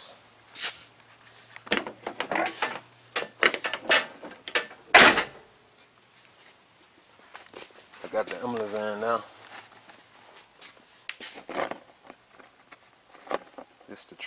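Scattered clicks and knocks of car door handle hardware being handled and fitted into the door, with one sharp, loud knock about five seconds in.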